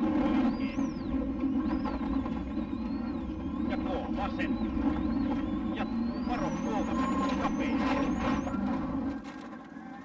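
Onboard sound of a Mitsubishi Lancer Evo rally car's turbocharged four-cylinder engine running at speed on a gravel stage, heard from inside the cockpit, with a high whine rising and falling above it. The engine sound drops away about nine seconds in.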